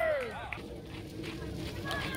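The end of a shouted voice, then faint distant voices of children and spectators over steady open-air field noise.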